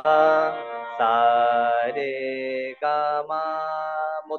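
A man singing sargam note syllables in about four long held notes at changing pitches, over a steady harmonium accompaniment.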